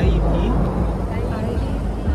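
Low rumble of wind buffeting the microphone, mixed with street traffic, under faint conversation. The rumble comes on sharply at the start.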